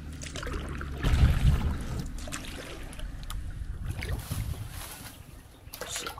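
Kayak paddle strokes dipping and dripping in calm water, with wind rumbling on the microphone, strongest about a second in. The sound drops off near the end as the kayak glides in under a low bridge.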